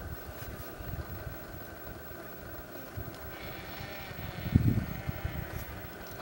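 A vehicle engine idling with a steady low rumble and hum, and one low thump about four and a half seconds in.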